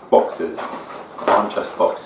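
A man murmuring under his breath while he handles and opens a small cardboard box, in short, uneven bursts.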